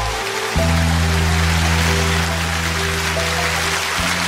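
Closing bars of live band music, a held low chord that shifts to a new one about half a second in, under steady audience applause.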